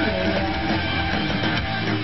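Post-hardcore band playing live, electric guitars over a drum kit, steady and loud.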